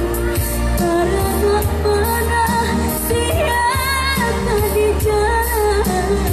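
A woman singing a Minang pop song through a microphone and PA over amplified backing music with a steady bass and regular percussion. Her voice holds long, wavering ornamented notes, with a melismatic run a little past halfway.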